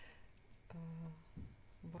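A woman's voice: one short, steady-pitched hesitation sound, a held filler vowel, about a second in, with quiet room tone around it.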